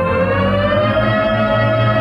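Electronic music: a sustained synthesizer tone, rich in overtones, glides up in pitch during the first second and then holds steady over a low drone.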